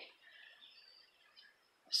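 Near silence in a pause between words: faint outdoor ambience with a few distant, soft bird chirps.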